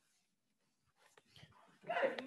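Near silence with a faint click and handling rustle, then a loud high-pitched call begins near the end.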